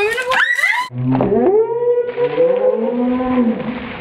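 Shrieks and long, wavering howls from people doused in ice-cold water, several voices overlapping: sharp high cries in the first second, then lower drawn-out wails.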